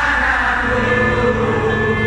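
Live band music played loudly through a concert hall's sound system, heard from within the crowd, with many voices in the audience singing along.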